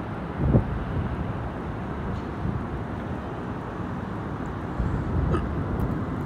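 Steady low outdoor rumble of distant city traffic, with wind noise on the microphone. Two brief louder blips stand out, about half a second in and near the end.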